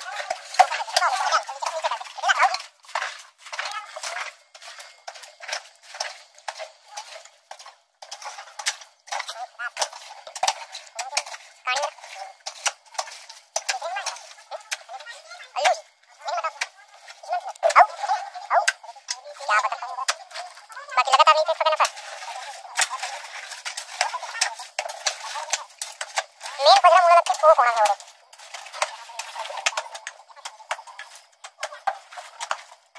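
Indistinct voices calling out, loudest twice in the second half, over a steady scatter of short sharp clicks and knocks.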